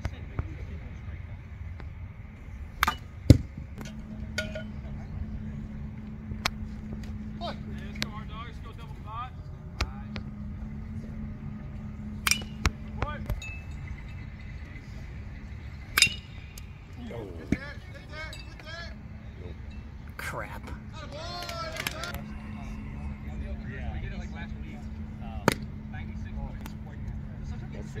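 Baseball game sounds: a few sharp ball impacts, the loudest about three seconds in, others at intervals. Under them, a steady low hum that comes and goes and faint distant voices.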